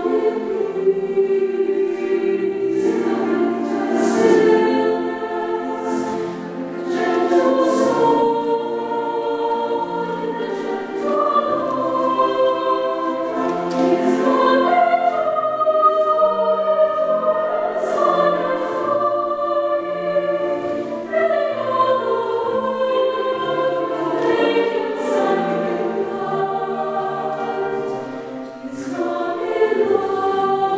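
A mixed-voice youth chamber choir singing in sustained, slowly moving chords, with crisp sung consonants ringing in a reverberant church. The sound swells and eases, dipping briefly near the end.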